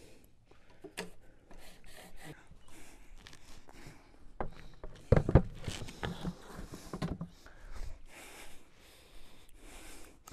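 Scattered small clicks, knocks and rubbing from seed plates and hopper parts of a garden row planter being handled, with the loudest knocks about five seconds in.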